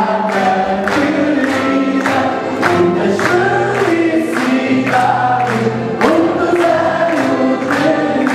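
A man singing a Portuguese popular song to a small strummed guitar, with a group of voices singing along and hands clapping on the beat about twice a second.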